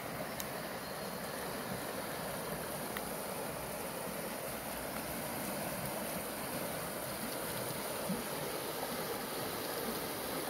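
A rocky mountain creek rushing over boulders in small rapids, a steady wash of moving water.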